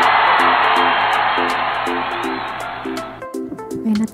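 Background music with a plucked-guitar melody and a regular light beat. For the first three seconds a loud rushing noise lies over it and fades away.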